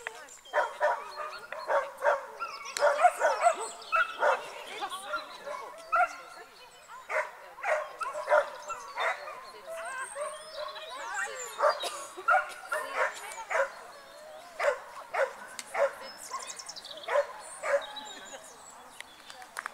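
Dog barking excitedly and repeatedly, short sharp barks coming one or two a second in runs, with human voices alongside.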